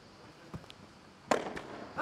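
Padel ball being hit back and forth in a rally: a few sharp pops of the ball off rackets and court. The loudest pop comes a little past halfway.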